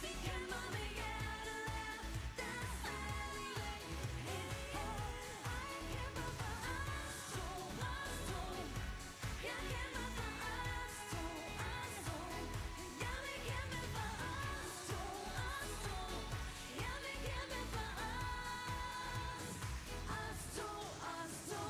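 Live pop song: women singing into handheld microphones over a dance-pop backing with a steady beat.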